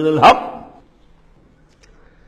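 A man's Quranic recitation ends on a short, sharp final syllable about a quarter of a second in, then dies away into a quiet pause of faint room tone.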